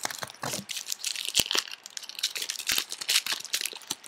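Crinkling and crackling of a foil trading-card pack wrapper being handled and torn open, a quick, irregular run of sharp crackles and clicks.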